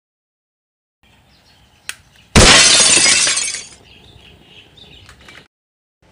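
A cast-iron gas burner being lit: a click about two seconds in, then a loud rush as the gas catches for about a second and a half, dying down to a faint hiss.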